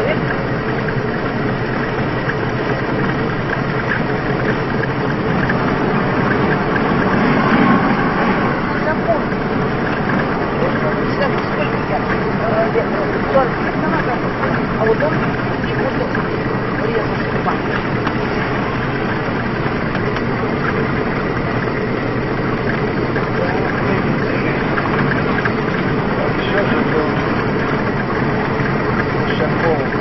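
Steady engine and road noise inside a moving car, with indistinct voices in the background.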